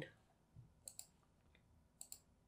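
Near silence broken by three faint computer mouse clicks, between about half a second and a second in.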